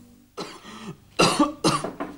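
A person coughing three times, the second and third coughs close together and the loudest.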